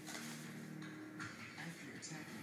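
Television soundtrack of a wildlife programme: music with a held low chord for about the first second, and a voice.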